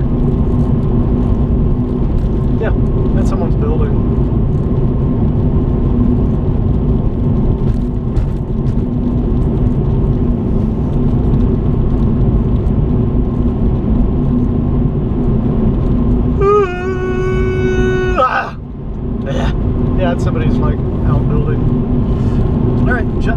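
Steady road and engine noise inside a car driving along a highway. About three-quarters of the way in, a single held tone sounds for about a second and a half and cuts off abruptly.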